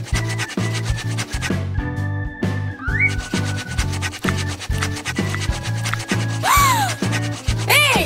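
Cartoon pencil-scribbling sound effect, rapid scratchy strokes on paper, over background music with a steady bass line. A short rising whistle comes about three seconds in, and swooping cartoon tones near the end.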